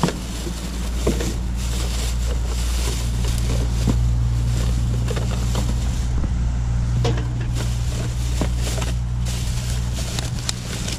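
Steady low hum of a motor vehicle's engine running, swelling a little about a second in. Over it are short clicks and rustling of plastic bags, bottles and cans being handled in a wheelie bin.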